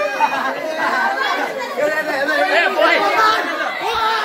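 A group of boys talking and shouting over one another in lively, overlapping chatter.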